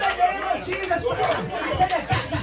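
A man praying aloud in fervent, rapid bursts into a microphone, with several other voices praying aloud at the same time.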